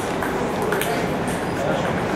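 A few sharp, scattered clicks of a table tennis ball, the loudest right at the start, over background voices.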